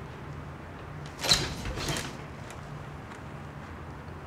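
A wooden door with a glass panel being opened, two short scraping sounds close together about a second in, over a low steady hum.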